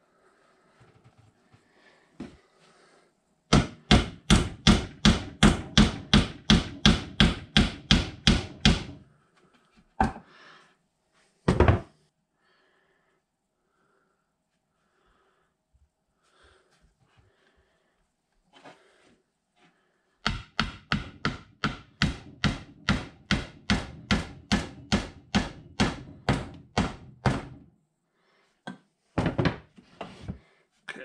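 A hammer driving nails into 1x4 wooden boards: two runs of quick, even blows, about four a second and each several seconds long, with a couple of single knocks in between.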